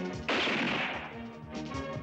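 Horror film soundtrack: sustained music with a sudden loud noisy impact about a quarter of a second in that fades away over about a second.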